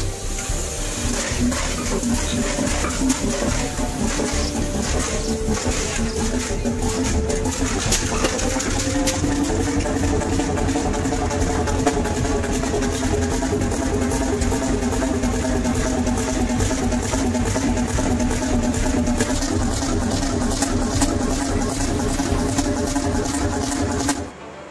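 A large 1936 Fairbanks-Morse 32D stationary diesel engine running steadily, a continuous run of exhaust beats, mixed with background music that holds sustained tones.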